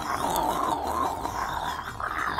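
A rough, throaty growl that wavers in pitch.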